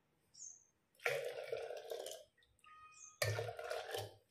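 Thick blended batter sloshing and pouring from a mixer-grinder jar into a steel pot, in two bouts about a second in and near the end. A bird chirps briefly in the background.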